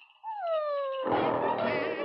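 A single falling, wailing tone lasting under a second, then orchestral cartoon score music starts up about a second in.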